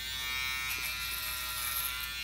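Corded electric hair clippers running with a steady buzz while trimming a child's hair.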